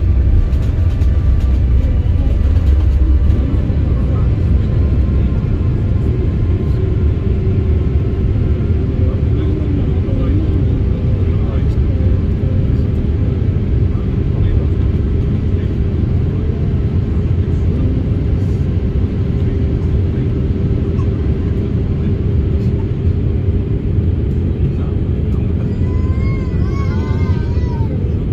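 Airliner's jet engines heard from inside the cabin during takeoff and climb-out: a loud, steady, deep rumble, strongest in the first few seconds.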